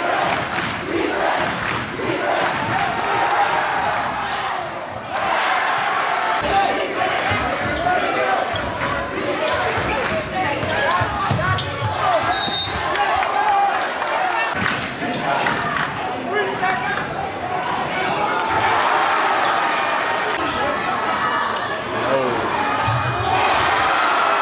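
Live basketball game sound in a gym: a basketball dribbling on the hardwood court, over steady crowd chatter and voices in the hall.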